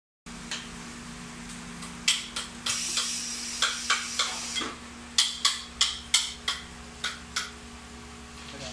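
Metal clamping fixture of a waterproof sock tester being handled: a run of about a dozen sharp clicks and knocks starting about two seconds in, over a steady low hum. A short hiss comes a little under three seconds in.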